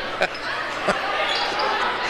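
Basketball dribbled on a hardwood gym floor: two sharp bounces in the first second, over the steady background noise of the gym.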